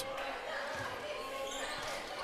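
Gym game sound in a large, echoing hall: a crowd murmuring in the stands, with a basketball being dribbled on the hardwood court.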